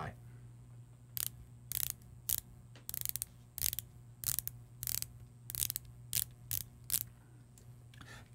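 Bronze dive bezel of a Bell & Ross BR03 Instrument Diver being turned by hand, ratcheting in a series of separate clicks about two a second: big, chunky and satisfying.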